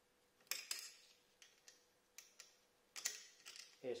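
Light, irregular metallic clicks and clinks, about a dozen over three seconds, from an Allen key and bolt being worked against the stainless end cap of a motorcycle silencer while an M4 rivet nut is set without a riveting tool.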